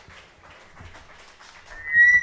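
Lull between songs at a small live music show: low room noise with faint scattered clicks and shuffles. Near the end a short, loud, high-pitched squeal rises and holds briefly.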